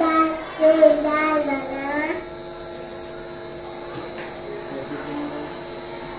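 A young girl singing a few drawn-out, gliding notes through a headset microphone for about two seconds, then the voice stops and only a steady electrical hum from the microphone system is left.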